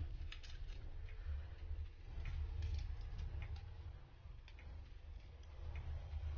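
Faint, scattered small clicks and taps of a smartphone and its replacement screen being handled and fitted together, over a low steady hum.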